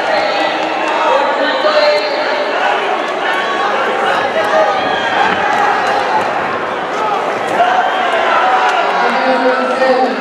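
Crowd of spectators talking and shouting all at once, many overlapping voices with no single one standing out, and a few faint sharp clicks.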